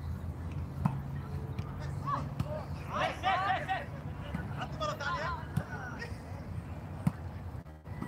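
Distant voices of volleyball players calling out, twice in the middle, over a steady low hum, with a few sharp knocks.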